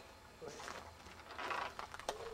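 Homemade wooden trebuchet arm swinging round on its pivot after release, with a short mechanical rattle about a second and a half in.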